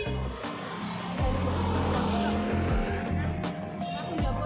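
Music with a steady beat and held bass notes. Through the middle, a vehicle passes on the street.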